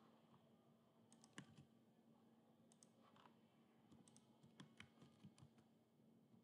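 Very faint computer keyboard and mouse clicks, a few at a time in small scattered clusters, over a low steady hum.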